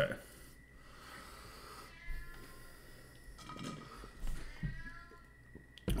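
A house cat whining and meowing several times at a closed door, wanting to be let in. The calls are faint and come in the second half.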